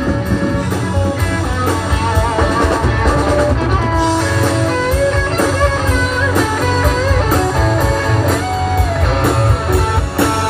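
Live rock band playing an instrumental passage: an electric guitar lead with bending, wavering notes over bass and drum kit, amplified through an outdoor PA.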